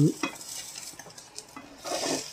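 An egg omelette sizzling in oil in a frying pan, with a spatula scraping and pushing under it; the sizzle grows louder near the end.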